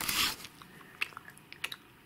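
A person biting into and chewing a piece of chocolate close to the microphone: a short crunching burst at the start, then a few faint mouth clicks.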